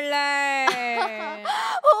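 A woman's long, drawn-out wailing vocal, held for about a second and a half and sliding slowly down in pitch, ending in a breathy gasp.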